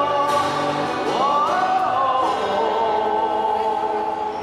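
Live pop song through a small PA: a male voice singing long held notes, sliding up to a higher note about a second in and holding it, over acoustic guitar accompaniment.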